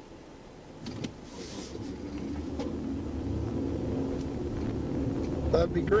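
Police patrol car pulling away from a stop and picking up speed, its engine and road rumble building steadily in the cabin. A couple of sharp clicks come about a second in.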